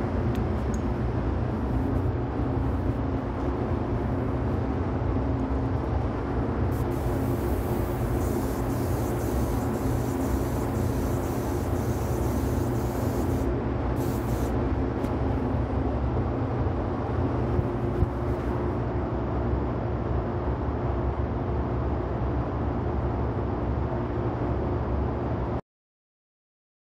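Spray-booth ventilation running with a steady low hum, and a gravity-feed spray gun hissing as it sprays clear coat: one long pass from about seven to thirteen seconds in, then a couple of short bursts. All sound cuts off suddenly near the end.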